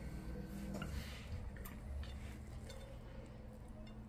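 Quiet room hum with a few faint, soft handling ticks as a metal cake server lifts a slice out of a soft, syrup-soaked cake.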